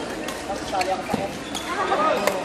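Badminton rackets striking a shuttlecock: several sharp clicks at irregular intervals, over the chatter of voices in a large hall.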